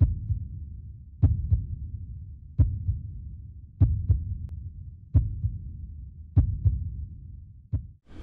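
Heartbeat sound effect: paired low thumps, lub-dub, about every 1.3 seconds, each trailing off into a low rumble.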